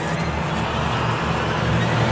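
Cinematic sound-design swell: a rushing whoosh that slowly rises in pitch and grows louder over a steady low rumble, building toward a hit.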